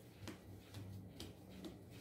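Faint, scattered soft ticks and taps of hands shaping a ball of bread dough on a floured wooden board, over a low steady hum.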